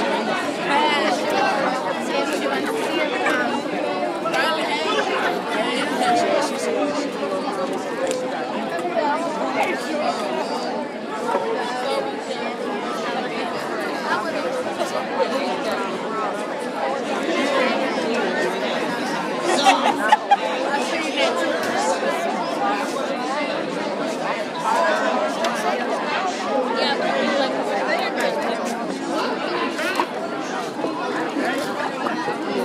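Large crowd chattering, many voices talking over one another at a steady level, with a few brief sharp louder sounds about two-thirds of the way through.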